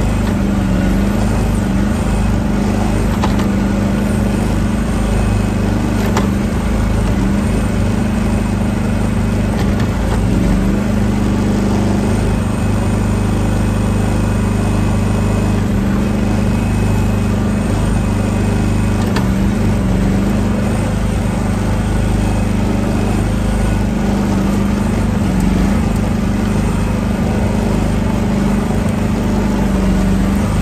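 Mini excavator's diesel engine running steadily under the operator's seat while the bucket digs. There is a constant low drone with a few faint clicks.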